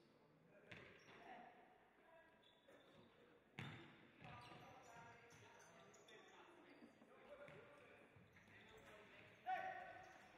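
Faint sound of a futsal game: the ball is struck sharply a few times, hardest about three and a half seconds in. Players call out, with a short, louder shout near the end.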